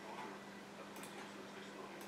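Quiet office room tone with a steady low hum and a few faint clicks about halfway through.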